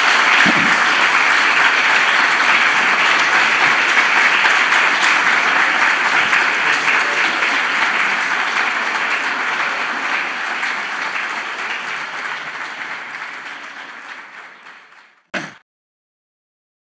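Audience applause, a steady round of many hands clapping that fades out over the last few seconds, ending with a brief burst of sound just before silence.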